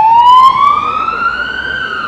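Emergency vehicle siren in a slow wail, its pitch rising steadily and turning to fall again near the end.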